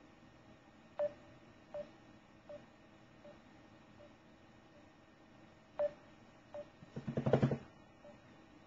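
Outgoing call tone from a voice-call app while the call is placed: short, mid-pitched beeps about every three-quarters of a second, some louder than others. Near the end comes a brief, louder, pulsing hum.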